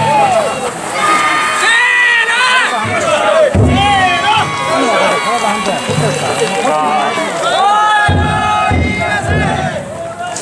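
A team of danjiri float carriers shouting and chanting together in long rising and falling calls as they carry the float, many men's voices overlapping. In the last couple of seconds a low beat comes in, about twice a second.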